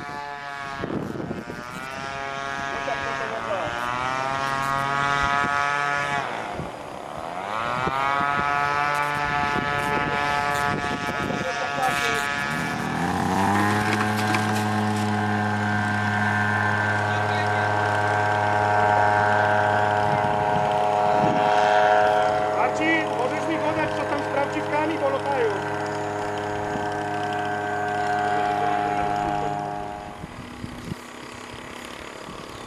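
Engine of a model tow plane, rising in pitch several times as it is revved, then running steadily at a high pitch from about halfway through, as for an aerotow of a large model glider.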